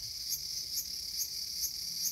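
Cicada song: a steady high, shrill buzz that swells in regular pulses about twice a second.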